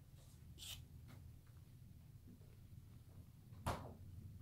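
Quiet room tone with a faint brief rustle under a second in and one short thump near the end.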